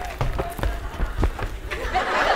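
Quick footsteps on a hard floor: about five dull thuds in two seconds.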